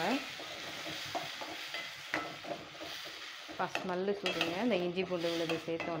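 A metal spoon stirs and scrapes an onion-tomato masala frying in oil in a stainless steel pan, clicking against the pan over a steady sizzle. A voice is heard over it in the second half.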